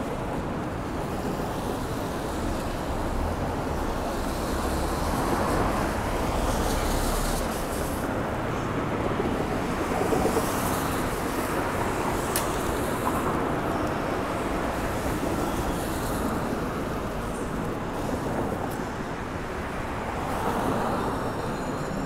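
Steady city traffic on rain-wet streets, with several cars passing one after another and the sound swelling as each goes by.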